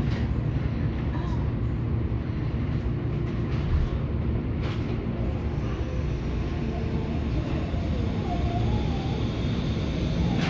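Tokyo Metro Namboku Line subway train pulling out of a station, heard from inside the carriage: a steady low rumble of running noise as it gathers speed.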